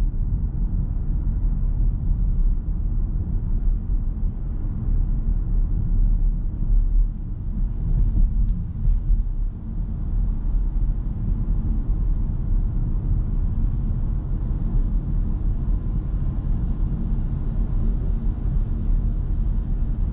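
Steady low rumble of road and tyre noise inside the cabin of a Nissan Note e-POWER AUTECH Crossover 4WD cruising at around 40–50 km/h on city streets.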